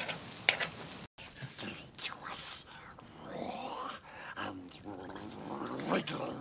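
Bacon sizzling on a campfire hotplate with a click of metal tongs. About a second in it cuts off suddenly, and film dialogue follows: voices speaking, some of it whispered.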